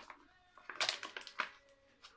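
Fingers working at the plastic packaging of a resealable body-scrub pouch that will not open, giving a few sharp crackles in the middle of an otherwise quiet moment.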